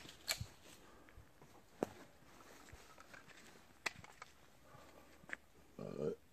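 Mostly quiet, with four faint, sharp clicks spread a second or two apart and a short low sound at the very end.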